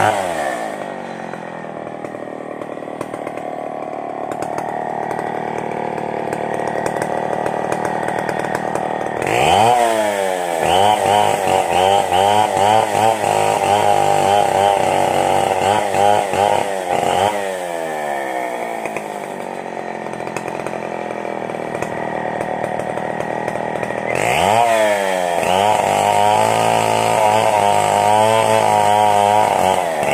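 Two-stroke chainsaw cutting a coconut palm trunk. It drops to idle about a second in, opens to a high, wavering full-throttle note for about seven seconds, falls back to idle, then opens up again about five seconds from the end.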